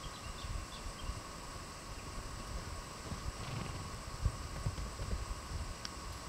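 A horse's hooves thudding on the sand of a round pen as it runs loose around it, an irregular run of muffled low footfalls. A steady thin high hum runs underneath.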